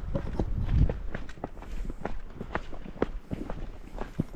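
Footsteps of several hikers walking briskly along a dirt and rock track, an irregular run of steps and scuffs, with a low rumble in the first second.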